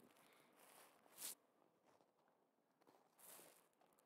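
Near silence: faint outdoor room tone, with one brief, faint noise about a second in.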